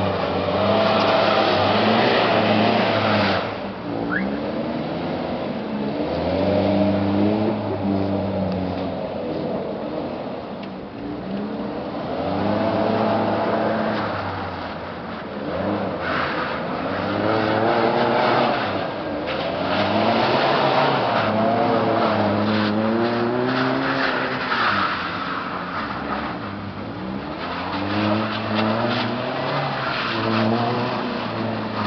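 Light truck's engine revving up and falling back again and again as it slides around on an icy car park, with tyre noise on the ice. The engine note rises and drops every few seconds, louder each time it picks up.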